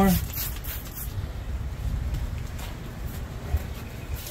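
A few quick squirts of liquid soap from a bottle onto a tire bead, then low scuffing as the tire is worked over the rim by hand, with one soft knock near the end.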